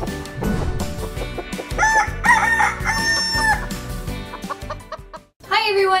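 A rooster crowing and clucking over a short music jingle, with the crow coming about two seconds in and lasting under two seconds. The music cuts off suddenly shortly before the end.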